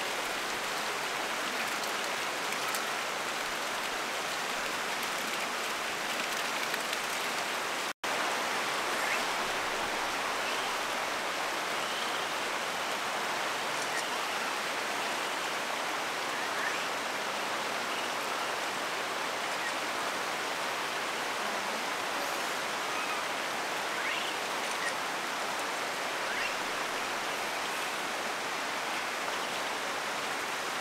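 Steady rush of running water. It drops out for an instant about eight seconds in.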